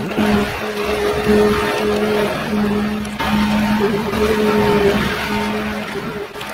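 Ecolog 574E forwarder's diesel engine and hydraulics running under load as its crane grapple loads spruce branches. The steady engine and pump tone keeps breaking off and returning as the crane works, over a continuous rustling, crackling noise.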